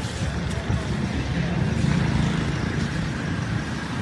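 A steady low rumble of outdoor street noise, like a vehicle engine running nearby, with a faint even hiss above it.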